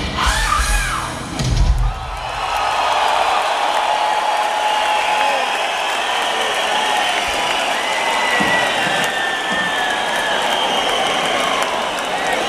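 Hard rock band with electric guitars and drum kit ending a song on a final loud hit about two seconds in. After it, a large arena crowd cheers, whoops and applauds.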